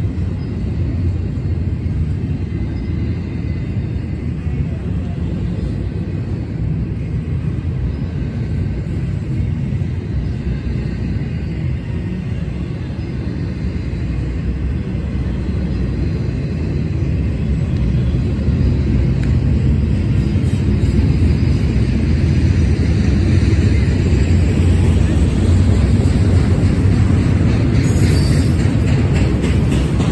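Double-stack intermodal freight train cars rolling past on steel rails: a steady low rumble of wheels on track, growing louder in the second half.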